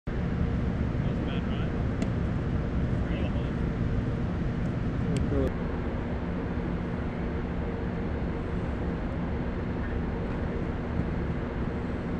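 Steady hum and rumble of a large indoor stadium's ambience, with faint distant voices and a couple of light clicks.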